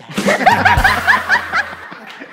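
A person laughing loudly in a quick run of high-pitched 'ha' bursts, about five a second, that tails off before the end.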